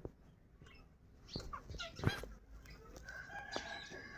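Bird calls: a few short chirps, then a longer drawn-out call starting about three seconds in.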